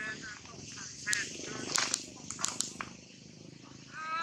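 People talking, with a low rattling buzz underneath through most of the middle and a few sharp clicks about two seconds in.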